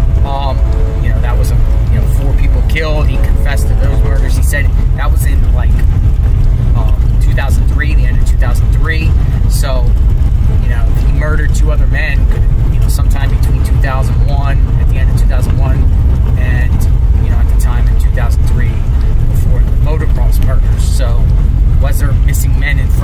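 Steady low road and engine rumble inside a moving car's cabin, with a man's voice talking over it.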